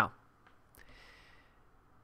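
The end of a spoken "Now," then a faint click and a soft breath taken by the narrator, who has a stuffy nose from a cold, about a second in.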